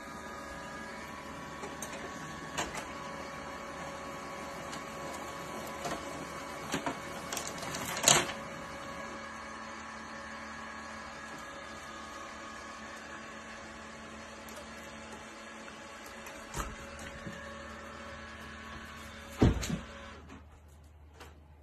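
HP printer running as it feeds out a printed sheet: a steady mechanical hum made of several even tones, broken by clicks and knocks, the loudest about eight seconds in and another near the end.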